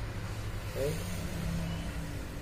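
A pause in a man's talk, with a short drawn-out vocal hesitation sound about a second in, over a low steady background rumble.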